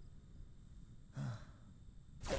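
A cartoon dog character sighs once, a short breathy exhale with a brief voiced note about a second in.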